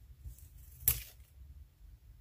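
Washi tape and paper being handled on a desk: one short, crisp rustle a little under a second in, over faint room hum.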